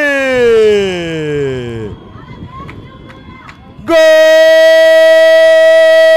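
A football commentator's drawn-out excited calls: a long held shout falling in pitch, then a short lull, then a loud, very steady held "vai" from about four seconds in that cuts off suddenly as the goal goes in.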